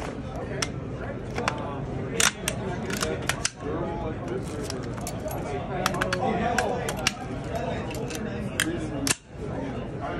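Sharp clicks and snaps of a bulletproof backpack's buckles and straps and of a carbine being handled as the rifle is drawn from the pack-turned-vest and brought to the ready, about a dozen scattered clicks, over background crowd chatter.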